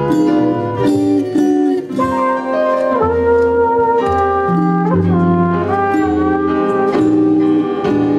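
Live jazz combo playing, with trumpet and electric guitar over upright bass and drums.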